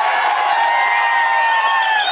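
Large crowd cheering and shouting, many raised voices overlapping in long, drawn-out calls.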